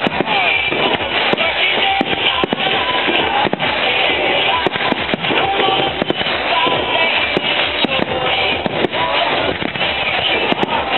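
Aerial firework shells bursting, many sharp bangs in quick succession, with music playing at the same time.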